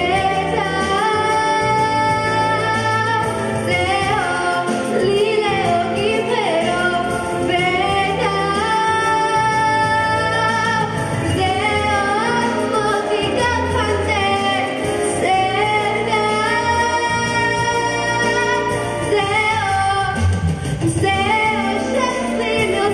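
A girl singing solo into a handheld microphone over instrumental accompaniment, holding long notes with vibrato and sliding between pitches.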